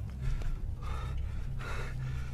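Two short, sharp breaths, like gasps, about a second in and near the end, the second louder, over a low steady hum.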